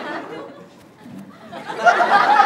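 A live comedy audience chattering and laughing, dipping in the middle and swelling loudly near the end.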